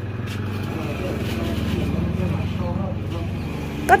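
A steady low engine rumble with an even fine pulse, under faint background talk.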